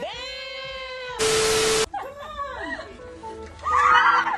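Meme sound clip: one long, arching, meow-like cry, then a short hiss with a steady beep under it, then a few shorter meow-like cries. Music comes back in near the end.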